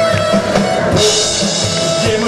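Live rock band playing: distorted electric guitars holding notes over a steady drum-kit beat, with a cymbal crash about a second in.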